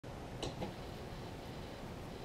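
Low, steady hiss with two soft clicks about half a second in.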